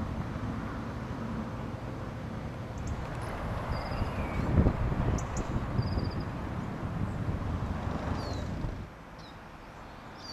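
Outdoor ambience: a low rumble of passing road traffic, with small birds chirping now and then. The rumble falls away sharply near the end.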